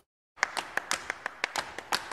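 A moment of dead silence, then a quick, uneven run of sharp taps or claps, about five a second, as in the sound-effect opening of a radio show's ident.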